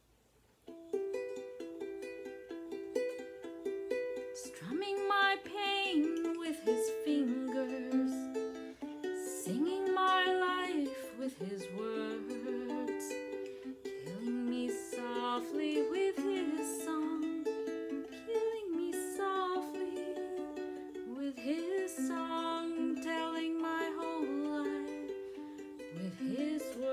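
Kala ukulele playing the slow intro of a ballad, with picked chord notes ringing into one another. It starts about a second in.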